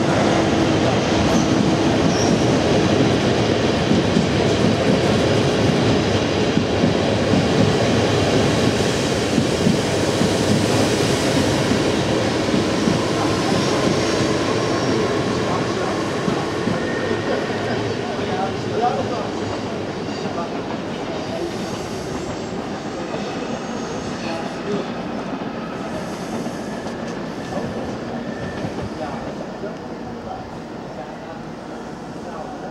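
Passenger train running past on the rails beneath, a steady loud rumble of wheels on track that fades over the second half as the last coaches move away.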